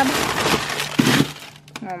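Plastic bags of frozen food crackling and rustling as they are shoved around inside a chest freezer, with a thud about a second in as a frozen package knocks down.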